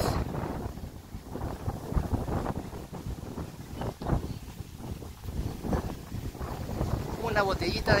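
Wind buffeting a phone's microphone on a moving bicycle: an uneven, gusting low rumble.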